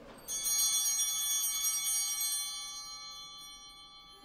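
Altar bells, a cluster of small hand bells, shaken once as the priest receives Communion. The bells start about a quarter second in with a brief shimmer of strokes, then ring on in many high, clear tones that fade over about three seconds.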